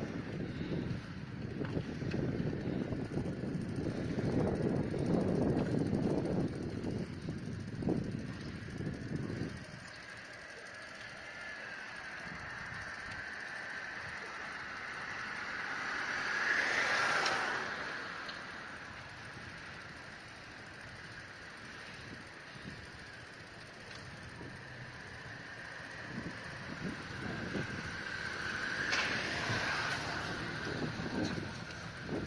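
Outdoor street noise with wind rumbling on the microphone for the first ten seconds, then a steady high whine that swells and fades about seventeen seconds in and rises again near the end.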